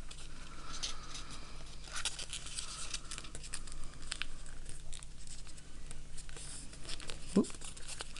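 Origami paper rustling and crinkling as it is folded by hand, with short scratchy strokes as fingers press the creases flat.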